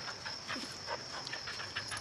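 Faint scuffling of a dog tugging on a toy, over a steady high-pitched insect buzz.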